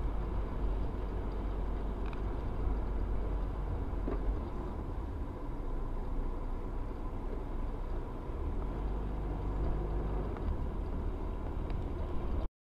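A car driving: a steady low rumble of engine and road noise, heard from inside the car's cabin.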